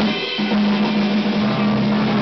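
Live blues band playing: a sharp drum-kit hit at the start, then electric guitars holding a steady chord over the drums, with a lower bass note joining partway through.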